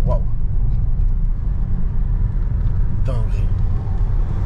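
Stage-2 tuned BMW 535d's twin-turbo inline-six diesel and road noise heard from inside the cabin, a deep, steady rumble as the car drives in sequential mode.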